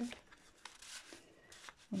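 Faint rustle of sheets of patterned scrapbooking paper sliding over one another as they are spread out by hand, with a few light ticks.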